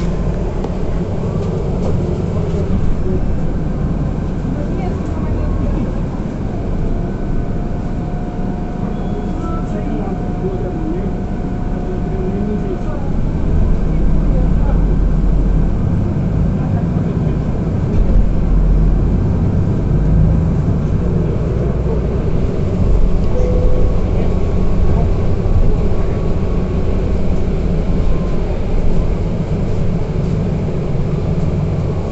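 Interior ride noise of an Otokar Kent C city bus on the move: a steady low rumble of engine and road, which grows louder about halfway through.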